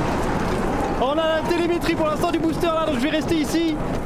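Roar of the SpaceX Starship rocket's engines during lift-off, a dense rumble that dominates the first second. From about a second in, an excited, high-pitched voice speaks over the fainter roar.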